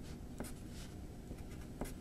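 Pencil writing on paper: faint scratching strokes with a couple of light taps as music notes are written by hand.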